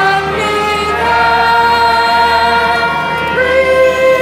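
A musical's chorus of many voices singing long held notes together, the pitch stepping up near the end.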